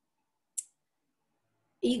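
A pause in a woman's speech: near silence broken by one short, high click about half a second in. Her voice resumes near the end.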